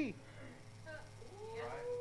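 A faint, drawn-out voice-like hum that rises slightly in pitch and then holds, starting about a second and a half in.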